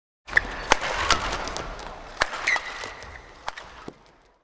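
Badminton rally: sharp racket-on-shuttlecock hits every half second to a second, with brief shoe squeaks on the court, over a steady arena crowd hum that fades out near the end.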